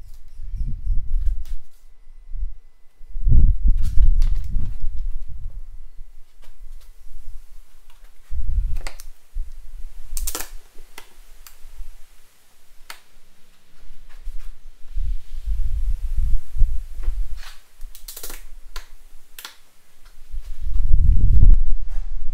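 An acrylic cutter scoring a plexiglass sheet along a wooden straightedge, giving sharp scraping clicks, mixed with bouts of low thudding and rumbling from handling the sheet.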